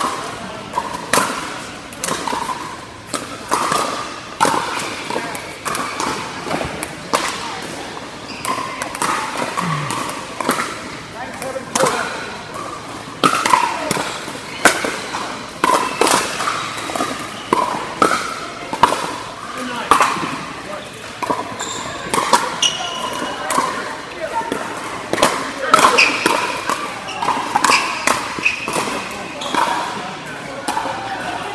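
Pickleball paddles hitting a hard plastic ball: sharp pops several times a second from rallies on this and neighbouring courts in a large indoor hall, over players' voices.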